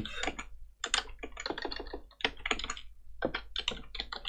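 Computer keyboard being typed on: quick runs of individual keystrokes with short pauses between them, as a phrase is typed out letter by letter.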